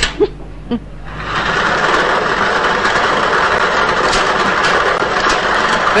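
A few short knocks, then about a second in a lottery draw machine starts up: a steady blower noise with the numbered balls rattling and clattering inside the clear drum as they are mixed.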